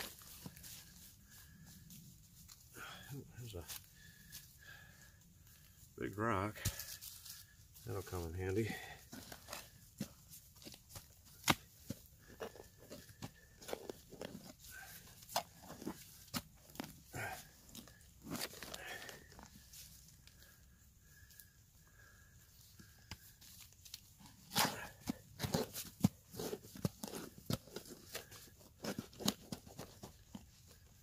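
Digging a hole in clay soil by hand: irregular scrapes, knocks and scoops of earth. Two short vocal sounds come about six and eight seconds in.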